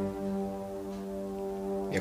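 Background score holding a sustained low chord, several notes ringing steadily without change.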